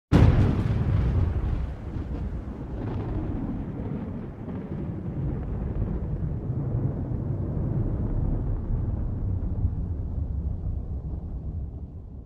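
Intro sound effect: a sudden loud boom at the start, followed by a long low rumble that slowly fades away.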